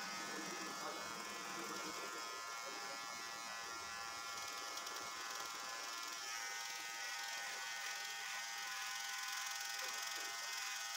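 Cordless electric hair clippers running steadily while cutting hair at the side of a head, a constant buzz that holds one pitch.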